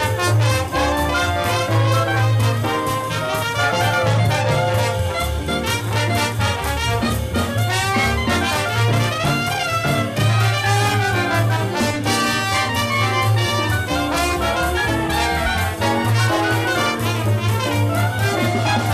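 Live traditional jazz band playing a swing number: trumpet, trombone, saxophone and clarinet lines over a walking double bass and drums.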